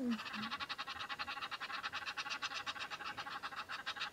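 Frogs calling at a dam: a rapid, even pulsed chorus of about a dozen pulses a second, going on without a break.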